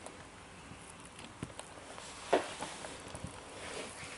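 Quiet workbench room tone with a few faint clicks of metal tools being handled on a leaded-glass panel, and one short knock a little past two seconds in.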